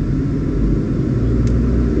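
Steady low rumble of a running vehicle, with a faint hum.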